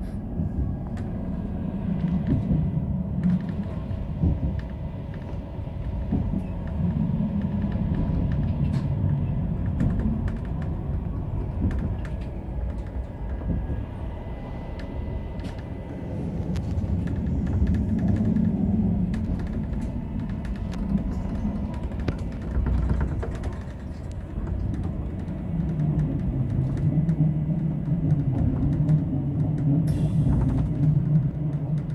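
Electric narrow-gauge train running, heard from inside the driver's cab: a steady low rumble of wheels on track and traction motors that swells and fades over several seconds, with occasional light clicks.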